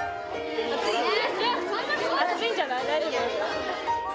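Many children's voices chattering at once over background music with held notes.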